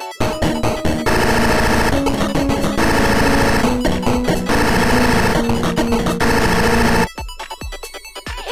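A loud, dense clash of cartoon music and sound effects. It swells in just after the start, holds for about seven seconds, then cuts off suddenly to light plucked background music.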